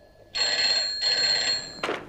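Telephone ringing: two short rings in quick succession, each about half a second long.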